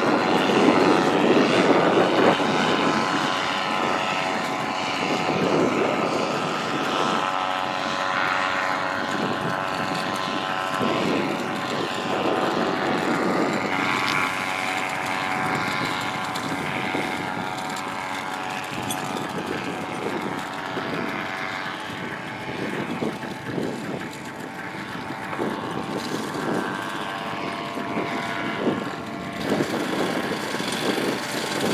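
Paramotor engine and propeller running steadily at a low, even speed, a droning hum with little change in pitch.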